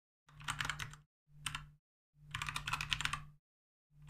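Computer keyboard typing a word: three quick runs of keystrokes separated by short pauses.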